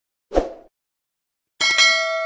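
Subscribe-button animation sound effects: a short pop about a third of a second in, then a bright notification-bell chime of several tones that starts near the end and keeps ringing.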